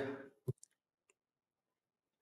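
The tail of a man's voice fades out, then a single sharp click about half a second in, followed by two fainter ticks; otherwise near silence.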